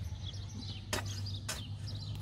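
Hoe blade chopping into loose, ploughed soil twice, about half a second apart, digging a planting hole.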